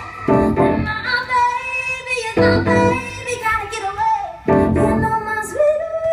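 Live band music: a woman sings a long, held and gliding melody over keyboard chords, with loud accented chords about every two seconds.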